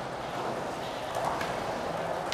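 Skateboard wheels rolling on smooth concrete: a steady rumble with a few faint clicks.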